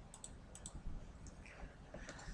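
Three faint, sharp clicks within the first second, over low room tone.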